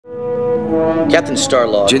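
A steady held tone, like a sustained horn or synthesizer chord, with several pitches stacked together. A small child's voice starts speaking over it about a second in.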